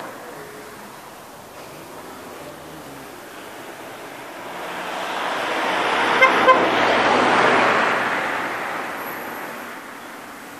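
A Peugeot van drives past, its engine and tyre noise building up over a few seconds to a peak and then fading away. Two short vehicle horn toots sound a little after halfway, as it comes alongside.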